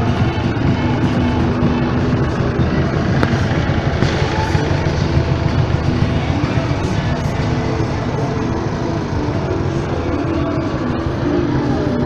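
Massey Ferguson tractor engine running steadily as the tractor passes slowly at close range, with music playing over it.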